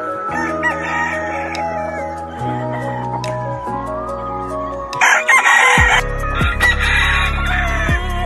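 A rooster crowing loudly, starting about five seconds in, over background music with a steady bass line.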